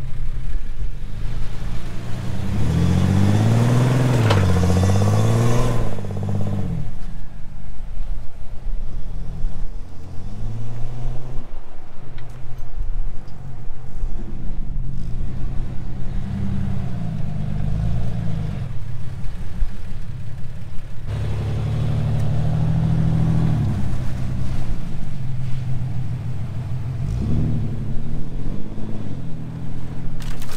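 Engines revving up and down under load as a yellow Jeep Cherokee pulls a stuck pickup and trailer through soft sand on a tow strap. The engine pitch climbs and drops several times, loudest about two-thirds of the way in.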